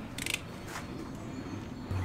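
Plastic snap-off utility knife having its blade slid out, a quick run of small ratcheting clicks near the start.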